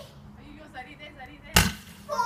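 A Roman candle firing one shot about one and a half seconds in: a single sharp pop.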